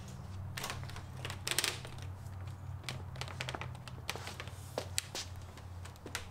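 Scattered light clicks and knocks of PVC pipes and fittings being twisted and repositioned by hand, over a steady low hum.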